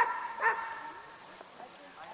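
A dog barking twice in quick succession, about half a second apart, at the start.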